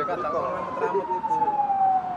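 A siren's single tone falling slowly and steadily in pitch, winding down and fading out just after the end, with quiet voices murmuring beneath it.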